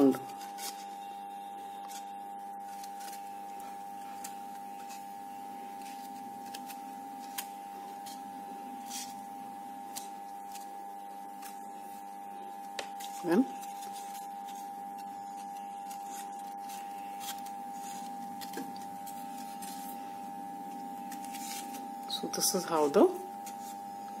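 Faint crinkling and rustling of crepe paper leaves being handled and opened out on a wire stem, over a steady background hum. A brief voice sound comes about thirteen seconds in.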